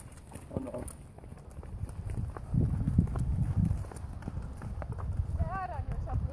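Hoofbeats of several ridden horses on a sandy dirt track: a run of dull knocks over a low rumble, louder for a stretch about halfway through.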